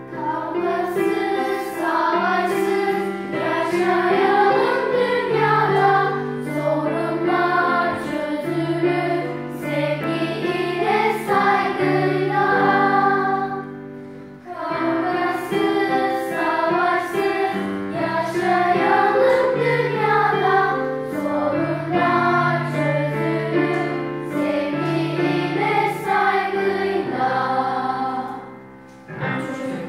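A song in Turkish sung by a choir of voices over keyboard accompaniment, in two sung phrases with a short break about halfway.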